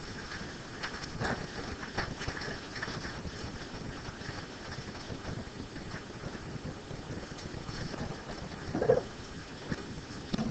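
Classroom background noise: a steady hiss with scattered faint clicks and rustles, and a brief louder sound about nine seconds in.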